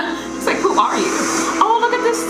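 Film trailer soundtrack played back: voices speaking over a music bed of steady held tones.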